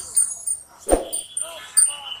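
One short, loud cry about a second in, followed by a fainter one shortly after, over light street noise with a few small clicks near the end.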